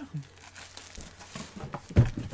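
Crinkling of a plastic bag as it is handled and pulled open, with a single sharp knock at the very end.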